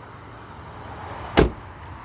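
A car door of a 2014 Kia Soul shut once, a single solid thump about one and a half seconds in.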